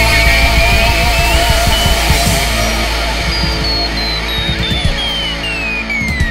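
Loud rock band recording playing as the song winds down, its level easing slowly. A high tone slides steadily down in pitch over the whole stretch.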